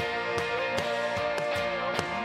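Live worship band music: women's voices holding one long sung note over keyboard and band accompaniment with a steady beat.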